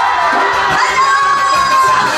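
A woman's high voice through a PA system, holding long shouted calls that slide down at their ends, over regular janggu drum beats.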